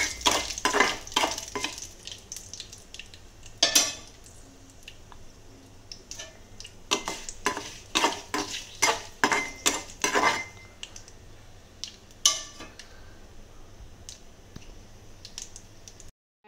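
A metal spoon stirring a tempering of mustard seeds, dal, curry leaves and dried red chilies in hot oil in a small metal kadai: the spoon clinks and scrapes against the pan in quick runs of taps near the start and again in the middle, with pauses between. A light sizzle of the frying seeds fades after the first couple of seconds.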